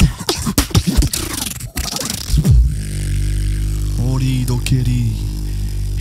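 Two beatboxers performing a tag-team routine. Fast vocal drum strokes fill the first couple of seconds. They give way to a steady low bass drone, and from about four seconds in a pitched vocal melody slides over the drone.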